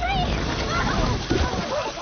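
Several voices shrieking and crying out in alarm together, over splashing in shallow muddy water.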